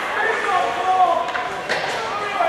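Spectators' voices in a hockey rink, including one long drawn-out shout, with a few short sharp knocks late on.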